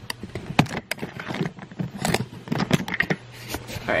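Handling noise as a camera is unscrewed from a tripod mount: irregular clicks, knocks and scrapes close to the microphone.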